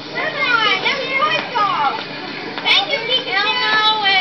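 Many children's voices at once, high-pitched and overlapping, calling out over one another in a crowd.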